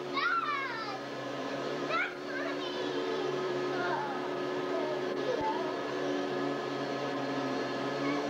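Canister vacuum cleaner motor running steadily, with young children's high-pitched voices rising and falling near the start and again about two seconds in.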